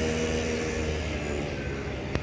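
A motor vehicle engine running with a steady hum that fades over the first second or so, over a constant rush of road and wind noise.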